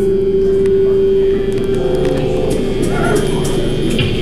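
A held electric guitar note ringing through the amplifier that stops about a second and a half in, leaving amp hum and noise with a few sliding pitches.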